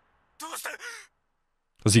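Speech only: a short strained line spoken by an anime character about half a second in, a pause, then a man starts talking near the end.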